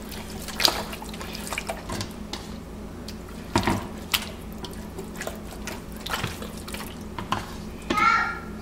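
Hands rubbing a wet jerk marinade into raw turkey skin: irregular wet squelches and slaps.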